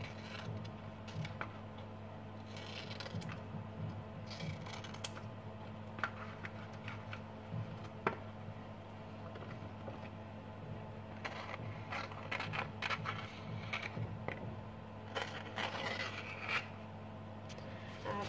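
Fresh banana leaf rustling and scraping as it is handled and cut into small squares, with scattered light clicks as pieces are laid on a plate. A steady low hum runs underneath.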